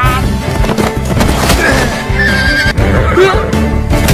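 A horse neighing over a bed of background music.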